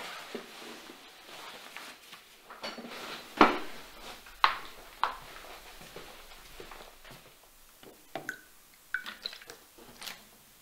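A shoulder bag being lifted off with rustling of cloth and strap, then three sharp knocks, the first the loudest, as it is set down and someone sits. Lighter clicks with a brief ringing follow near the end.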